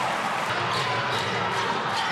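Steady arena crowd noise with a basketball being dribbled on the hardwood court.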